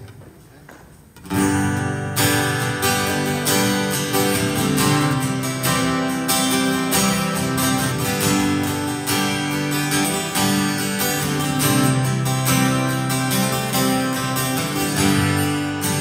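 Two acoustic guitars playing the instrumental intro of a country song, starting about a second in after a brief hush.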